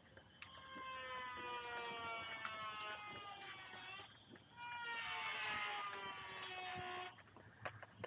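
A faint engine hum with a clear pitch that slides slowly lower, heard twice: once for about three and a half seconds, then again for about two and a half seconds.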